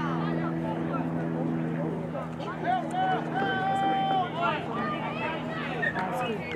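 Shouts and calls from players and spectators across a rugby league field, including one long drawn-out call about halfway through. A steady low engine hum runs underneath.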